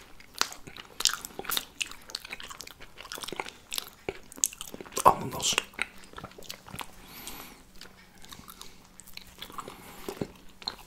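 Close-miked chewing and biting of iced gingerbread (Lebkuchen) by two people: dense, irregular small crunches and wet mouth clicks, with one louder crunch about five seconds in.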